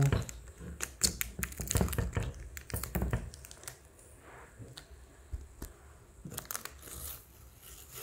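Thin protective plastic film being peeled off a graphics card's plastic fan shroud, crackling and crinkling in irregular spurts. It is busiest in the first three seconds, quieter in the middle, and picks up again near the end.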